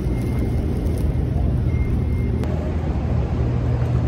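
Steady low hum of a fast-food restaurant's background machinery, with a faint high beep sounding briefly just before the middle.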